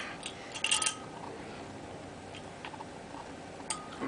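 Metal corkscrew being twisted into a wine bottle's cork: a few sharp metallic clicks and scrapes in the first second, then only occasional small ticks.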